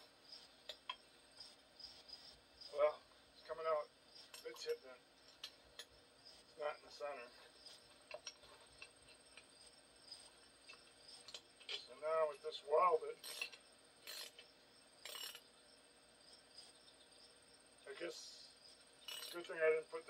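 Steel hand tools clinking against a brake drum puller as a wrench is fitted to and turned on its bolts. A few sharp metallic clinks come about a second apart around the middle.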